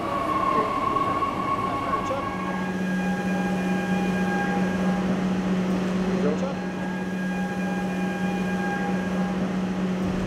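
Gautrain electric train pulling in at an underground platform: a steady whine, falling slightly as it slows, gives way about two seconds in to a low steady hum while it stands. Higher steady tones come and go twice over the hum.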